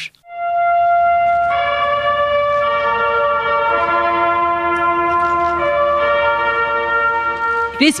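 Music of slow, sustained chords on wind instruments, starting a moment in, each chord held and then shifting to the next every second or two.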